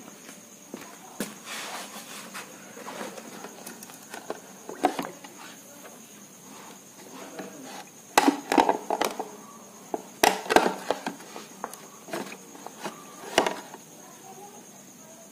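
Irregular knocks and clatter from a wire holder and a chrome-plated metal engine cover being handled in a plastic tub of nitric acid. The knocks come in two busy clusters past the middle, with a last loud knock near the end.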